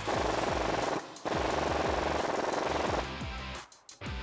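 Impact wrench hammering a new top nut down onto a strut shaft with an 18 mm socket. It runs in two bursts: about a second, a short pause, then nearly two seconds more that trails off.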